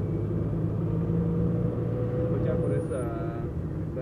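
Steady engine and road hum inside the cabin of a moving Nissan matatu minibus, with a voice heard briefly a little past halfway.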